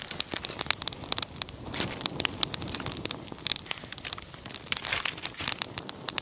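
Small kindling fire of dry twigs and dead leaves crackling as it catches, with many sharp, irregular crackles.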